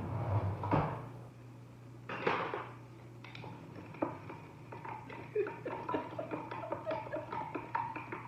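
A utensil stirring inside a glass carafe of hibiscus sorrel drink. From about three seconds in come quick, irregular clinks and knocks against the glass, after a brief rushing noise just past two seconds. A low steady hum runs underneath.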